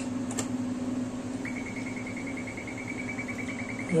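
A single click of the CT console's scan-start key over a steady low hum. About a second and a half in, a fast, even beeping on one high note begins, about ten pips a second, running to the end: the Toshiba Activion 16 scanner's exposure tone while the scanogram is taken.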